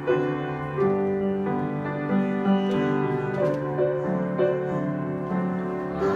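Grand piano playing alone, a melody line over held chords, with a new note or chord about every half second.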